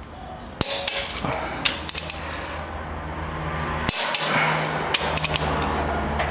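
Irregular sharp metallic clicks and knocks from a torque wrench and socket being fitted and worked on the connecting-rod big-end nuts of a Toyota 5L engine block. A steady low hum runs underneath from about a second in.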